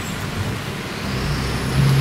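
A large truck on the road growing louder as it approaches, its engine rumble building from about a second in. A faint high whine rises in pitch near the end.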